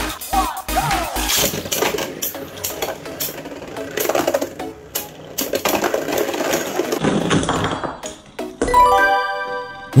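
Beyblade spinning tops clashing in a plastic stadium: many sharp clacks over background music. A short electronic chime near the end.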